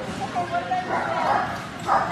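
A dog yipping and barking in short repeated bursts, with voices in the background.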